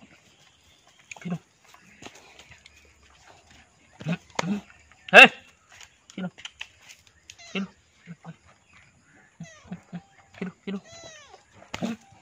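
A small kitten meowing several times, in short high calls. A man's short vocal calls come in between, the loudest a sharp "ey!" about five seconds in.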